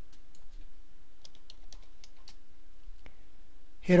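Computer keyboard keys tapped in a short scattered run as numbers are typed in, most of the keystrokes bunched in the middle, with a single click about three seconds in.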